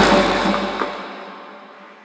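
Closing music ending: a final chord with percussion rings out and fades away over about two seconds.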